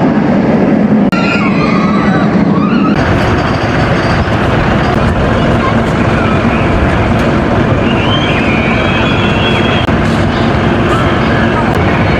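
Steel roller coaster train running along its track: a steady rumble and clatter that sets in suddenly about three seconds in, with people's voices over it.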